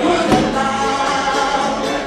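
A bluegrass band of mandolin, acoustic guitars and banjos playing while a woman sings lead into the microphone, with held sung notes over the plucked strings.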